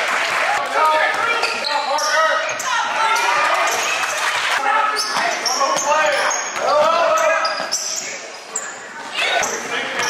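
Gym sound of a live basketball game: a ball dribbling on the hardwood court among shouting voices of players, coaches and spectators, echoing in the hall.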